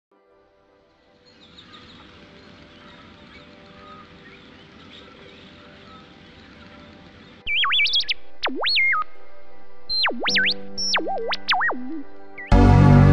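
Faint woodland ambience with small bird chirps, then from about halfway through loud electronic robot bleeps whose pitch swoops steeply up and down in quick warbling runs, over a low steady hum.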